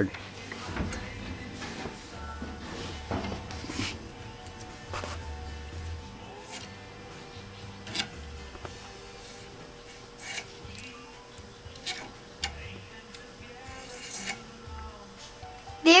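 Scattered light clicks and knocks of metal lathe parts and wooden pen blanks being handled as the blanks are worked off a pen-turning mandrel, over a faint steady hum.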